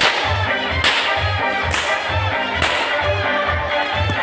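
A circus performer's whip cracking four times, sharp and sudden, a little under a second apart, over music with a steady bass beat.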